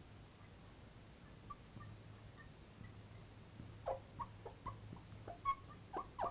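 Marker squeaking on lightboard glass as words are written: a run of short squeaks, sparse and faint at first, closer together and louder in the second half, some dropping in pitch. A steady low hum lies under them.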